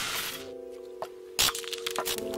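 Intro music: held synth tones come in under fading crackle, with a sharp hit about a second and a half in.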